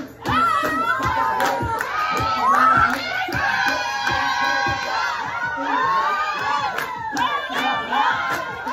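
A group of women whooping, shouting and cheering together over music with a steady beat, about two beats a second, with one long high held call in the middle.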